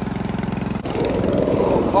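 Riding lawn mower's small OHV engine running steadily through a welded-on aftermarket exhaust. About a second in it comes under load with a rougher, noisier sound as the mower starts moving over loose dirt.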